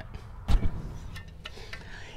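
Handling noise from a hand come-along (ratchet puller) being picked up: one knock about half a second in, then a few light clicks as its metal hooks and ratchet shift.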